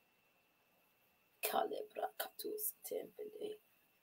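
Quiet speech, far softer than the talk around it, in short syllables starting about a second and a half in.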